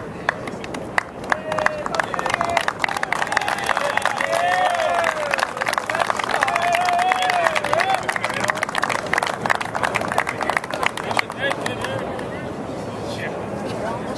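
A small crowd applauding: close, dense hand clapping that starts about a second in and dies away near the end. Voices cheer and call out over it in the middle.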